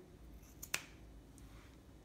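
Scissors snipping through a fuzzy sock: one sharp click of the blades closing about three-quarters of a second in, otherwise quiet.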